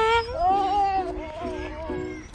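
A toddler's high-pitched voice: a sliding cry at the start, then a longer wavering babble. Underneath runs background music, a simple tune of held notes.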